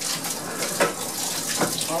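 Water running from a pull-out spray faucet and splashing into a utility sink, the splash shifting as the spray head is swung about and set back on the faucet.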